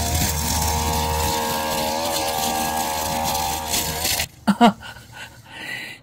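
Backpack brush cutter running at high revs with its trimmer-line head spinning through grass and weeds, its engine tone steady. It cuts off abruptly about four seconds in.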